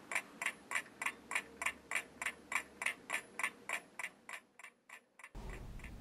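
Clock ticking steadily, about three ticks a second, fading away about four to five seconds in, followed by faint room tone.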